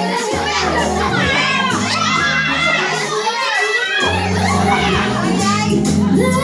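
Music with a steady bass line playing under many excited voices of a group chattering and calling out at once.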